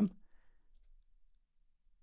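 A faint computer mouse click about half a second in, otherwise near silence.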